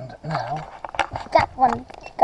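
Quiet, indistinct speech, with a few sharp clicks of the camera and its mount being handled.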